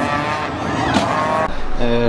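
Car engines accelerating hard in a drag race, the engine note rising steadily in pitch until it cuts off about one and a half seconds in.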